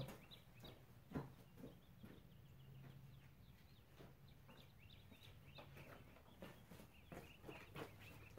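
Near silence: faint outdoor room tone with scattered faint bird chirps.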